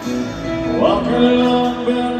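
Live country band playing with guitar and sustained chords, heard from the audience. A pitch slides up about a second in.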